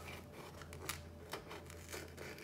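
A hobby knife blade slitting the tape that seals a cardboard box: faint scratching with a few small sharp clicks.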